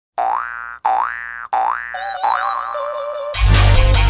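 Electronic soundtrack opening with three identical springy 'boing' tones, each sliding upward in pitch. A melody of synth notes follows, then a loud, bass-heavy passage comes in about three and a half seconds in.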